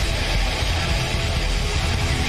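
A live rock band playing an instrumental stretch with no vocals: electric guitar, drums and keyboards, loud and steady.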